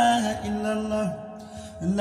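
A man's voice chanting an Arabic Islamic devotional poem, holding one long note that bends down and fades about a second in. After a short lull, the next phrase begins near the end.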